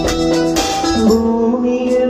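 Live band music: keyboards and other instruments playing with a regular beat. A voice comes in on a held sung note about a second in.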